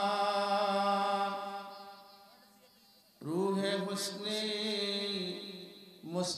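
A man chanting Arabic in a slow, melodic style through a microphone. He holds one long note that fades out about two to three seconds in, then starts a second long held note about three seconds in, which tails off near the end.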